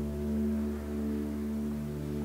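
Ambient drone music: several sustained, overlapping tones held steady, gently swelling and easing in loudness.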